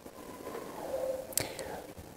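A quiet pause in a man's speech into a handheld microphone: faint voice-like murmuring and a short click about one and a half seconds in.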